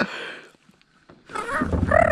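A person's drawn-out vocal exclamation, starting about a second and a half in, over a low rumble.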